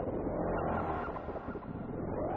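Serge Paperface modular synthesizer patch playing: a dense, engine-like drone with rising pitch sweeps repeating over it.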